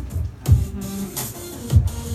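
Instrumental intro of an R&B/pop backing track, with a deep kick-drum beat and sustained low notes.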